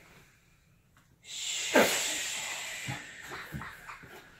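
A woman and young children breathing out hard through the mouth in a long hissing 'shh' after a quiet held breath in, the Spider-Man breath of shooting webs from the fingertips. The hiss starts suddenly about a second in and fades over the next two seconds.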